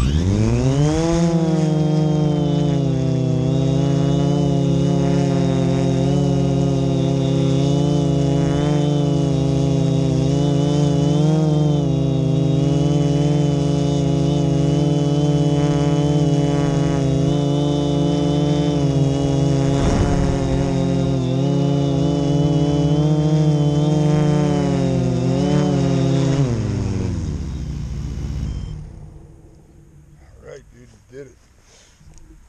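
Multirotor drone's electric motors and propellers spinning up with a fast rising whine, then holding a steady hum with small pitch wobbles through an automatic takeoff and hover. Near the end the pitch falls away as the drone lands and the motors stop.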